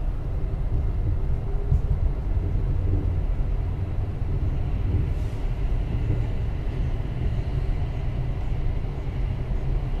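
Interior of a Class 707 Desiro City electric multiple unit running: a steady low rumble of the wheels and running gear, with a few faint steady tones above it.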